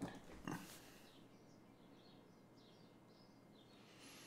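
Near silence: room tone, with two soft knocks in the first half second.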